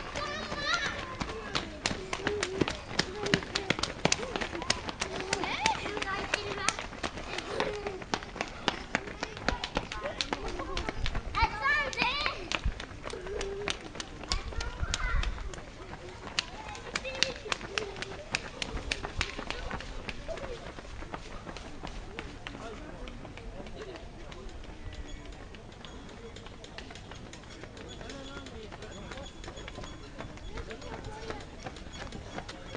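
Roadside spectators talking indistinctly, with many sharp taps through the first twenty seconds; the sound becomes quieter and more even in the last third.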